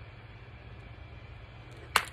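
A single sharp click just before the end, over a steady low hum.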